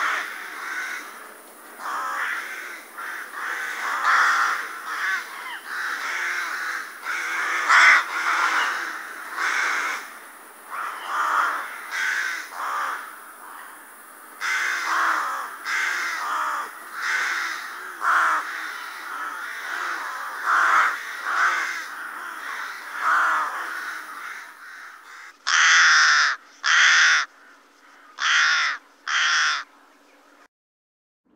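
A group of rooks cawing, many calls overlapping: a croak like a carrion crow's but softer, less aggressive and higher. Near the end, four separate louder caws.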